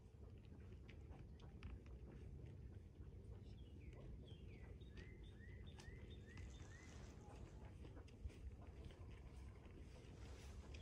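Faint songbird singing a few seconds in: some falling whistled notes, then five quick repeated notes, over a low steady rumble.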